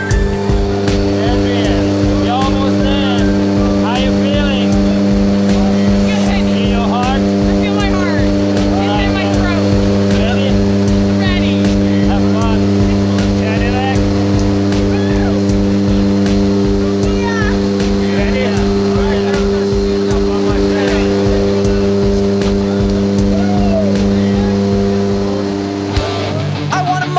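Steady drone of a skydiving plane's engine and propeller heard inside the cabin in flight, with people's voices over it.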